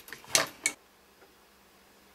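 Hard plastic toy parts of a pull-apart Olaf figure clacking and scraping as they are pressed together: a light click, then two short louder clacks within the first second, followed by quiet.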